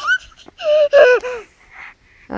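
A young child's high-pitched wordless vocal sounds: a brief squeak, then a longer call with a wavering, bending pitch.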